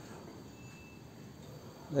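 Faint steady chirring of insects, crickets by the sound's kind, in the background, with a brief thin tone about half a second in; a man's voice begins right at the end.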